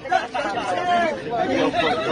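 Several people talking over one another: passenger chatter in an airliner cabin.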